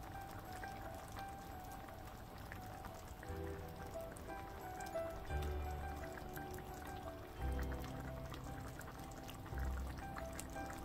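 Jambalaya bubbling at a boil in a braiser, a steady patter of small pops and spatters. Soft background music runs underneath, with a low note coming in about every two seconds.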